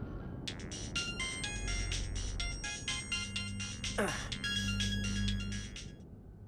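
Mobile phone ringing: a rapid electronic ringtone melody of short high notes, with a falling swoop about four seconds in, stopping just before the phone is answered.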